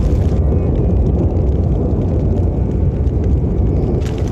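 A loud, steady low rumbling roar under the wildfire footage, heaviest in the deep bass. The higher hiss drops out about half a second in, leaving mostly the low rumble.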